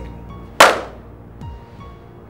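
A single sudden, loud percussive hit about half a second in, dying away within half a second, over faint scattered music notes: a dramatic sting in the drama's music track.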